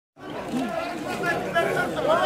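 Several men's voices talking and chattering at once, after a short dropout at the very start.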